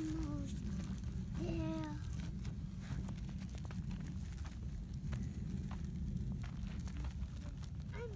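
Steady low rumble of wind buffeting a phone microphone. A child makes two short wordless vocal sounds, one falling in pitch at the start and another about a second and a half in, with faint scattered clicks.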